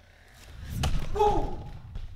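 Handling thump as the falling camera is knocked and caught, one sudden impact about a second in, followed by a short, falling vocal exclamation.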